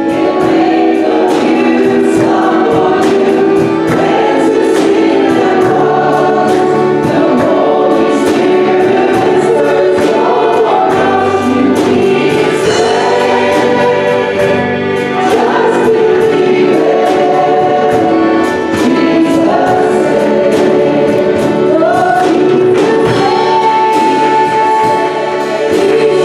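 Live gospel worship song led by two women singing into microphones, with band accompaniment and a steady beat. A long held note begins near the end.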